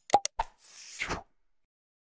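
Sound effects from an animated subscribe button: three quick mouse clicks, then a short whoosh of about half a second that cuts off just past the first second.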